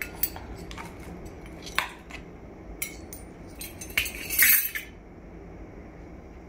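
Metal measuring spoons clinking against a steel bowl and a plastic cup as baking soda is scooped and tipped in. A few light, separate clinks, then a louder cluster of clinks about four seconds in.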